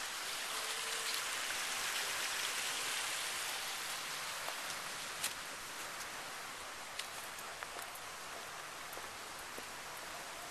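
Steady rushing hiss of water running down a boulder waterfall, a little louder in the first few seconds and easing off slightly after, with a few faint ticks.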